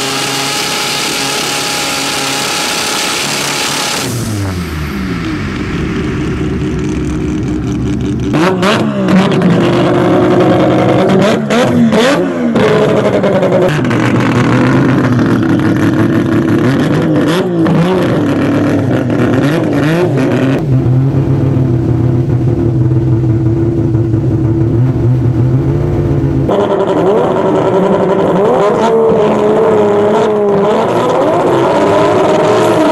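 Turbocharged 20B three-rotor rotary engine of a drag-racing Mazda6 SP revving up and down, heard in several spliced clips that cut off suddenly, with a noisy high-revving stretch at the start and repeated rev blips later.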